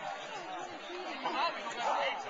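Indistinct chatter of several people talking at once; no drumming.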